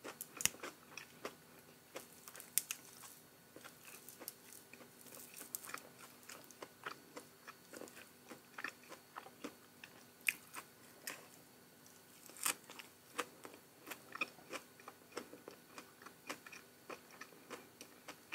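Close-miked chewing: a person biting and chewing crunchy raw greens and fried fish, with many short, crisp crunches and mouth clicks, several a second and irregular.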